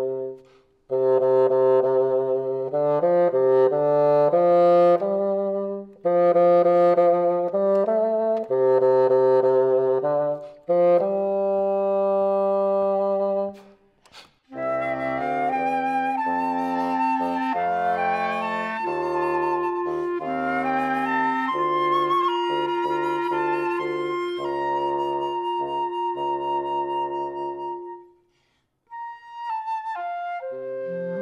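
Solo bassoon playing low phrases in several bursts with short pauses between them. About halfway through, a flute, clarinet and bassoon trio takes over with the flute carrying a high melody, and the trio fades out on a held note near the end.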